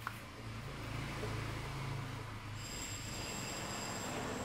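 A low, steady mechanical rumble, with a click at the very start and a faint high-pitched whine joining a little past halfway.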